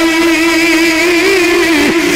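A man's voice holding one long sung note in devotional recitation, steady in pitch with a slight waver, dipping near the end.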